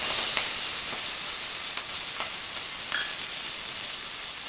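Chopped onions and green chillies frying in hot oil in a pressure cooker: a steady sizzling hiss with a few faint ticks.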